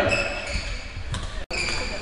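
Echoing large-hall noise: a low rumble with dull thumps and a few faint steady high tones, after the last syllable of a man's speech at the very start. The sound drops out abruptly for an instant about one and a half seconds in, then resumes the same.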